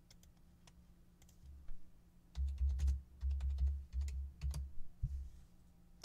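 A few faint clicks, then a burst of typing on a computer keyboard from about two seconds in to about five seconds in: quick key clicks with dull thumps.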